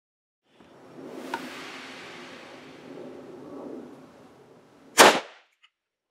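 Low handling noise with a sharp click just over a second in, then one loud, sharp gunshot about five seconds in from a Zastava M70 NPAP, a 7.62×39 mm AK-pattern rifle, followed by a short echo.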